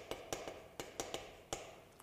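Chalk tapping against a chalkboard while a word is written by hand: a quick, irregular run of light taps.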